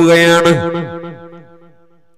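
A man's preaching voice through a public address system holds the end of a drawn-out word, then dies away in an echoing tail over about a second and a half.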